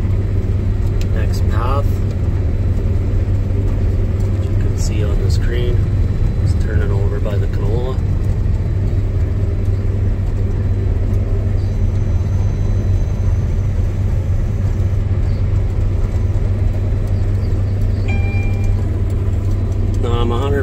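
Combine harvester running, heard from inside its cab as a steady low drone.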